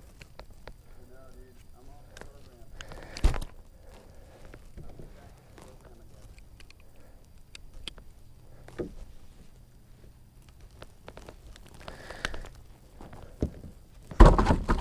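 Quiet handling sounds while a hook is worked out of a fish with needle-nose pliers: a few scattered clicks and knocks, the loudest about three seconds in, with faint voices in the background.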